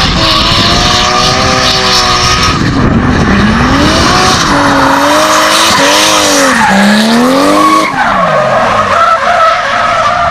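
Drift car's engine revving hard, its pitch rising and falling again and again as the throttle is worked through the slide, over the continuous hiss of rear tyres spinning and skidding sideways on asphalt.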